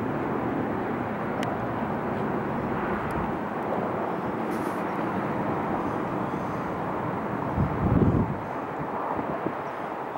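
Steady outdoor city background noise, a low rumble of distant traffic, with a brief louder low-pitched swell about eight seconds in.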